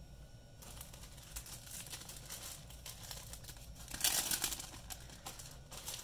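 Clear plastic packaging crinkling as it is handled, in irregular rustles that start about half a second in and are loudest around four seconds in.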